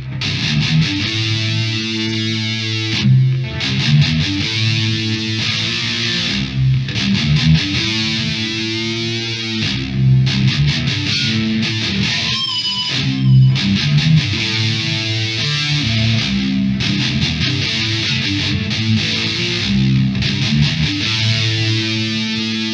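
Heavily distorted electric guitar played through a harmonist pitch-shifter pedal in detune mode with delay, giving a thick, doubled tone. It plays a slow metal passage of long, sustained notes and chords.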